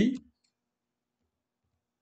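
A man's spoken word tails off in the first moment, then near silence.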